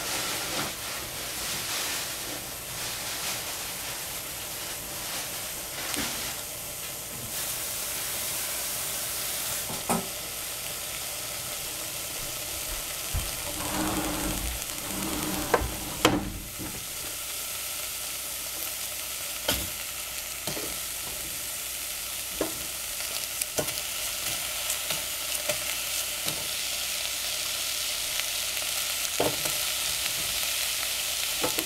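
Scallions and garlic sizzling in a hot stainless steel saucepan, a steady hiss. About halfway through there is a loud knock, then a run of light knocks as sliced zucchini and yellow squash pieces are dropped into the pan.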